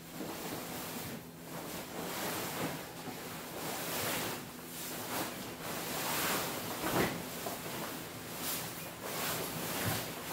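Fabric Dowco boat cover rustling and swishing as it is unrolled and pulled over the bow of an aluminium boat, in repeated swells of noise, with a soft knock about seven seconds in.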